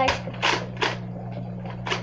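Several short scuffing noises, about half a second apart, from a plastic toy gun being handled close to the microphone, over a steady low hum.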